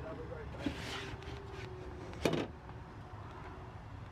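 A paper folder being slid out of a plastic brochure box, rustling about a second in, with a single sharp knock just past halfway. A faint steady hum sits underneath.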